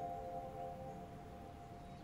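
Background score music: a single struck, bell-like note keeps ringing and slowly fades.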